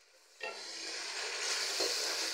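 Water poured into hot oil with fried onions and spices, sizzling loudly. It starts suddenly about half a second in and grows brighter and hissier.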